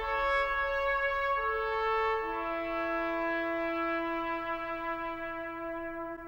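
Slow brass music of long held chords, the notes shifting a couple of times in the first few seconds.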